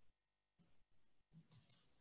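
Near silence, with a few faint short clicks about one and a half seconds in.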